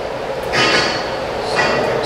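Metalworking machinery running in a fabrication shop: a steady mechanical rush, with two louder surges carrying a high whine, one about half a second in and one near the end.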